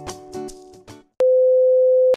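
Background music with plucked notes fading out, then, after a short silence about a second in, a loud, steady single-pitch beep of a TV test-card tone that holds to the end.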